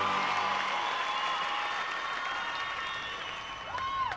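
Crowd applauding and cheering, with whistles, slowly fading out.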